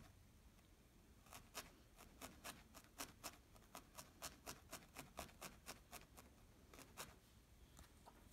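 Felting needle stabbing repeatedly through wool into a wet-felted background, faint quick pokes about four a second, starting about a second in.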